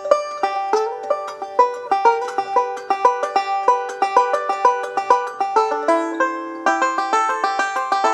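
Five-string banjo picking a fast bluegrass-style break: a quick, even stream of plucked notes over a steadily ringing drone note.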